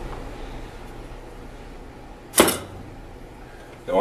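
A single short clunk about two and a half seconds in, as a metal vacuum-pump housing part is set down on the workbench, over a faint low hum.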